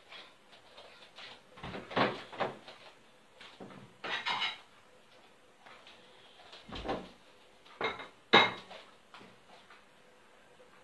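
Kitchen clatter: a wooden spoon knocking against a metal saucepan and dishes being handled. There are a handful of separate knocks and clinks, the sharpest a little past eight seconds in.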